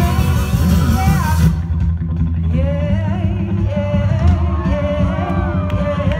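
Live band playing loudly with singing over it. About a second and a half in, the high cymbal wash drops out, leaving heavy bass and drums under the voices.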